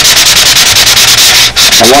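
Sandpaper rubbed by hand in rapid, even strokes over the rib cap strips of a doped model-airplane wing, a light scuff-sanding before a coat of filler.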